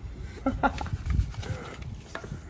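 A man's short wordless vocal sounds, a low drawn-out 'hmm'-like murmur, over the handling of paper envelopes in a metal mailbox.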